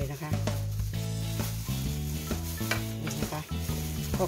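A hand in a plastic food glove working shredded chicken breast and mango strips together in a stainless steel bowl: crinkling of the glove and a wet, rustling stir of the food, with a few sharper crinkles.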